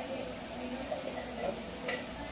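Quiet kitchen with a faint steady hum, and a light click at the start and again near the end.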